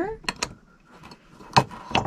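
A detachable metal pan handle clicking against the rim of a white cornflower-pattern dish as it is slipped on and clamped. There are two sharp clicks just after the start and two more about a second and a half in.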